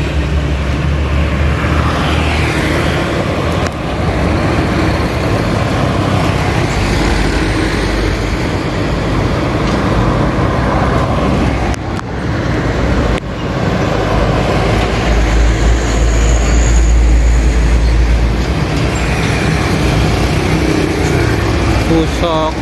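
Heavy diesel trucks and motorbikes passing on a road, a continuous traffic sound of engines and tyres with a deep low rumble. The rumble is heaviest about two-thirds of the way through, as the trucks come close.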